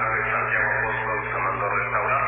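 Speech only: a recorded voice heard over a narrow, telephone-like line, with a steady low hum beneath it.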